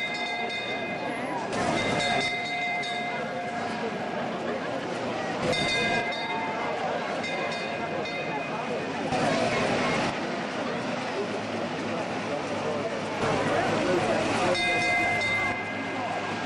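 Vintage Leyland fire engine's bell ringing in several bursts, its clear overlapping tones sustaining between pauses, over a crowd's noise that swells twice.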